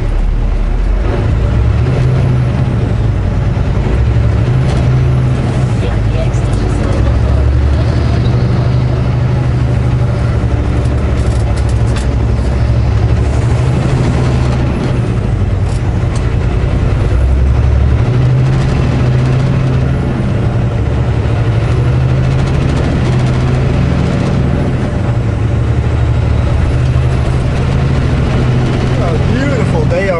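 Semi truck's diesel engine and drivetrain heard from inside the cab, a steady low rumble as the loaded truck pulls through a roundabout and picks up speed onto the highway.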